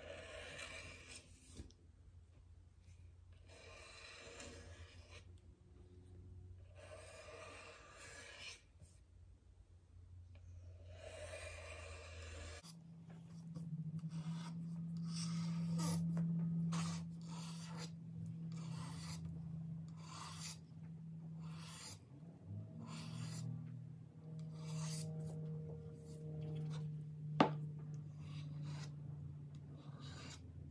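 A small hand blade scraping primer off the edge binding of a primed Les Paul-style guitar body, revealing the binding beneath. The scraping is slow and light, in strokes a couple of seconds apart at first and closer together later, over a faint steady low hum. There is one sharp click near the end.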